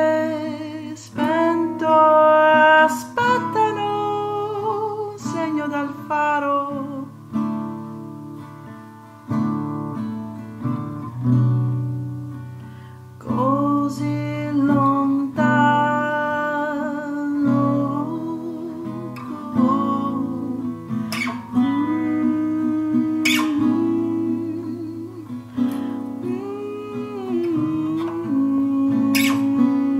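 A folk song's passage between sung verses: acoustic guitar playing, with a melody line gliding above it.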